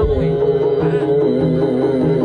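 Live East Javanese jaranan/barongan ensemble music: a held, wavering melody line over a repeating drum and gong pattern.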